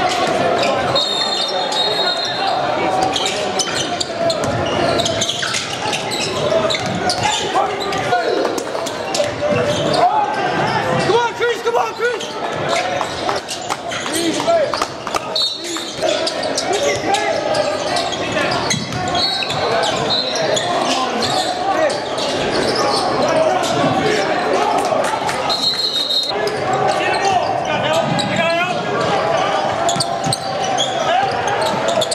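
Basketball game on a hardwood gym floor: the ball bouncing and dribbling, sneakers squeaking, and indistinct voices of players and spectators, echoing in a large hall. Several brief high squeaks stand out, each lasting about a second.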